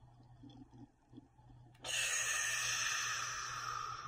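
A woman breathing out slowly through her mouth: a long, breathy exhale that starts suddenly about two seconds in, after a quiet held breath, and carries on to the end. It is the long out-breath of a yogic breathing exercise.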